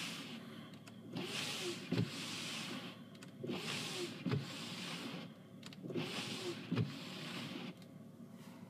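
Car windscreen wipers pushing heavy snow off the windscreen, heard from inside the cabin: the wiper motor whirs and each sweep swishes, ending in a knock, about every two seconds. They make three sweeps and stop just before the end.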